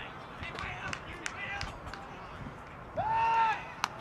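Quiet ballpark background with a few faint clicks. About three seconds in, a person gives one long shout, and just before the end comes a single sharp snap: the ball smacking into the first baseman's glove on a pickoff throw.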